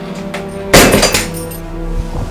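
Background film music, with one loud bang about three-quarters of a second in as a door is slammed shut.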